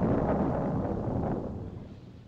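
A loud, deep rumbling noise that sets in suddenly and fades away over about two seconds.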